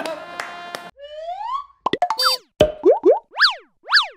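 A cartoonish logo sting made of sound effects. It opens with a smooth rising whistle-like glide and a quick flurry of pops and clicks, then runs into a string of fast up-and-down 'boing' pitch sweeps, about two a second. In the first second, before it, the show's background music is still playing.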